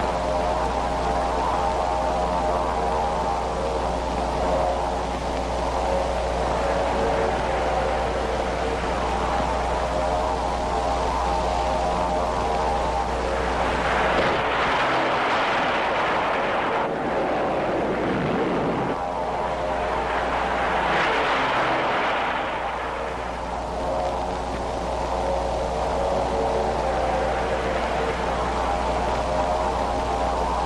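Old film soundtrack with a steady drone of aircraft engines over a constant low hum. Around the middle come two loud rushes of noise, the first sweeping down in pitch, as a plane dives and a blast goes off.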